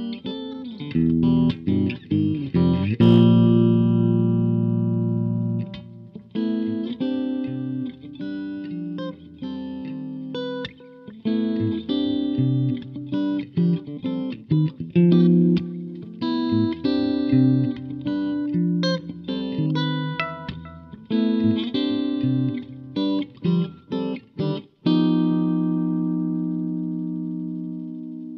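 Solo electric guitar, a G&L S-500 played through an MXR Carbon Copy analog delay into a Fender Jazzmaster Ultralight amp, playing runs of picked notes and chords in a jazz-fusion style. A loud chord about three seconds in rings for a few seconds, and a last chord struck near the end is left ringing. The low end may be bottoming out in the recording.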